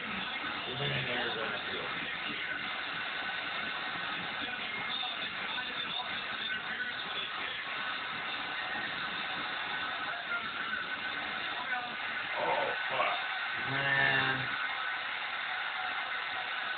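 A college football broadcast playing through a television speaker: steady stadium crowd noise under music, with a few short voices, the loudest one near the end.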